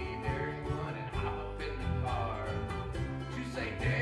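A small acoustic string band playing a lively, country-style tune: bowed violin, strummed ukulele and an acoustic bass guitar carrying a steady bass line.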